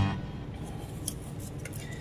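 Quiet handling sounds: faint rustles and light taps as a small part in a cardboard box with foam packing is picked up and moved across a carpeted surface.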